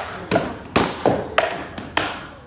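Rattan weapons striking shields and armour in a fast exchange between armoured fighters: about five sharp cracks in under two seconds, each with a short ring.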